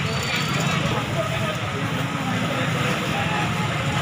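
Steady street background noise with indistinct voices of people talking.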